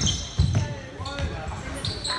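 Basketball bouncing on a hardwood gym court: a few low thumps, the loudest about half a second in, in a large echoing hall.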